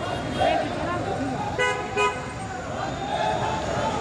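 Road traffic with a vehicle horn sounding two short honks about a second and a half in, over the voices of people walking along the street.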